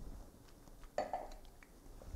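Quiet sounds of a person tasting red wine from a stemmed wine glass: a short sip about a second in, with a few faint clinks of the glass as it is handled and set down on the counter.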